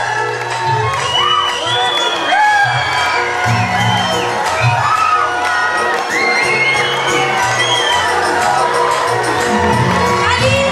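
Music playing with a repeating bass line while an audience cheers and whoops, many short high calls rising and falling over the music.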